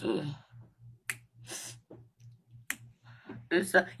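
A few sharp clicks and short rustles from someone moving about close to the phone, over a faint low hum that pulses two or three times a second.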